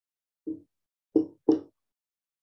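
A marker knocking and stroking against a whiteboard while figures are written: one short tap about half a second in, then two quick taps close together a little past a second in.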